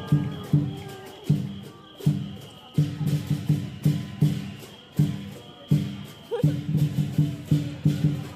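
Lion dance percussion: a big drum beaten in quick runs of strokes with brief breaks, with cymbals clashing along with it.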